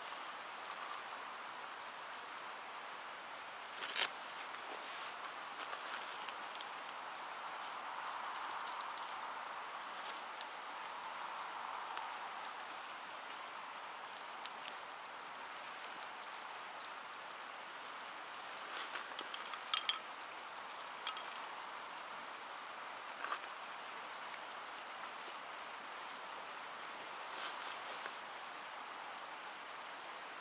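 Steady rush of a river, with scattered light clicks and knocks over it; the sharpest is about four seconds in, and a small cluster comes about twenty seconds in.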